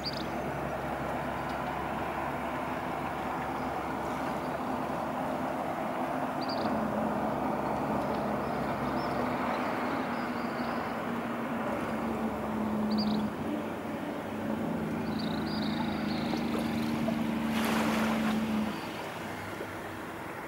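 A motorboat engine runs with a steady low drone that grows fuller partway through and drops away near the end. A few short high chirps sound over it.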